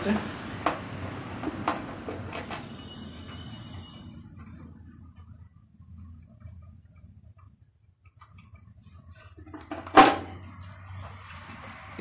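A few light clicks while a VW Beetle tail light base is worked loose from the rear fender, then a quiet stretch and one sharp knock about ten seconds in as the base comes free.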